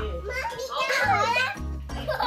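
Young children's voices as they play, one high and wavering about a second in, over background music with steady low notes.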